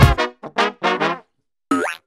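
Full band music stops abruptly, leaving a few fading repeats of the last note, then after a short silence a brief brass glissando sliding upward near the end.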